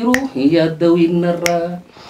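A man singing unaccompanied, holding one long, steady note, with two sharp clicks over it, about a second and a half apart.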